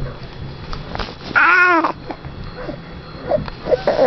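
A baby cooing: one short vocal coo that rises and falls in pitch, about a second and a half in, with a few small, quieter baby noises near the end.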